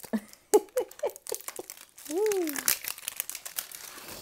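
Crinkling and clicking from handling a metal Pokéball tin while trying to open it. Mixed in are a short run of laughter about half a second in and a drawn-out vocal 'ooh' near the middle.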